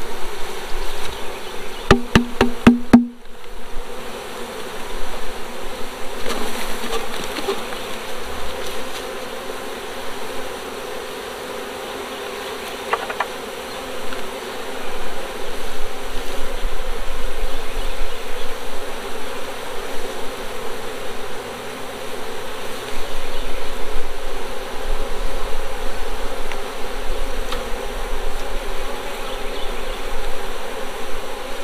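Many honey bees buzzing around an open hive box, a steady hum of wings. About two seconds in comes a quick run of wooden knocks.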